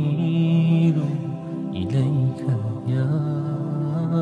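Background music: a voice chanting in long, held notes that change pitch every second or so.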